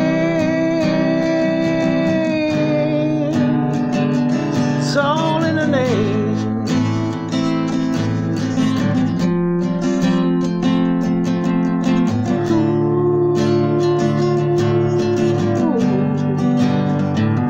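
Acoustic guitar strummed steadily under a man singing. His voice holds a long note for about two seconds at the start, sings a short phrase around five seconds in, and holds another long note near the end.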